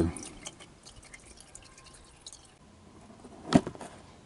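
Faint dripping of warm engine oil from the open drain hole into a drain pan, then a single sharp knock about three and a half seconds in.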